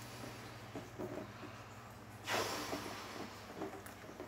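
A person inflating a latex balloon by mouth, with soft blowing and one sharp rush of breath a little over two seconds in.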